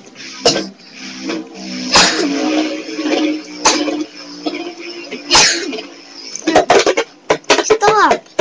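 Toy wrestling action figures being knocked and handled, a series of sharp knocks and short noisy bursts that come faster near the end, over a steady low tone.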